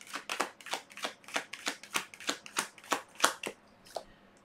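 A deck of tarot cards being shuffled in the hands, a quick even run of soft card slaps, about five a second, that stops shortly before the end.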